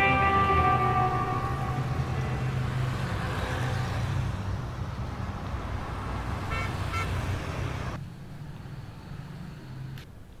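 City traffic noise: a steady rumble of vehicles with car horns, one sounding at the start and fading, and short toots about seven seconds in. The traffic drops away about eight seconds in.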